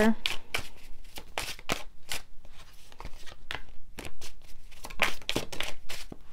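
Tarot deck being shuffled by hand: a run of short, irregular card snaps and flicks as cards slide off and slap against the pack.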